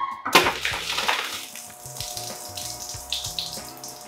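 Sparkling wine foaming and fizzing out of a freshly uncorked bottle, a gushing hiss that is loudest at first and slowly dies down.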